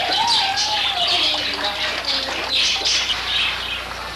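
Small birds chirping and calling in quick irregular bursts, over a trickle of water from a small fountain.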